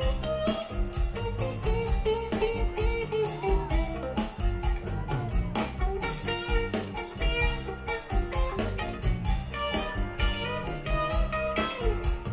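Live jam band playing an instrumental passage: electric guitar lines over bass and a steady drum beat.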